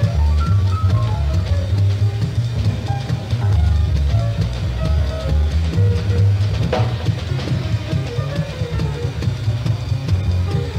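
Live small-group jazz, with plucked upright bass and drum kit to the fore. The bass walks note by note under short melodic lines, and there is one sharp drum accent about two-thirds of the way through.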